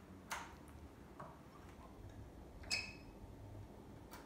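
A few faint clicks and one short, bright ping from the controls of a Suzuki sport motorcycle as the ignition is switched on; the engine is not running.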